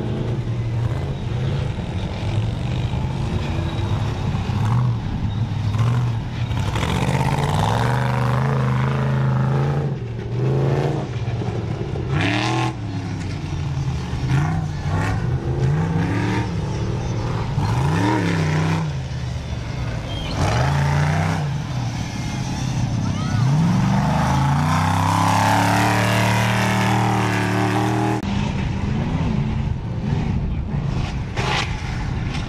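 Off-road race truck engines revving hard and easing off again and again as the trucks drive around a dirt track, the pitch rising and falling every second or two.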